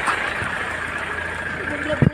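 Steady low hum of an idling vehicle engine under a constant outdoor noise wash, with a voice briefly near the end.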